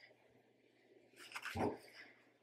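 Near silence with faint room tone, then a woman's short exclamation, "whoa", near the end, preceded by a few faint light rustles.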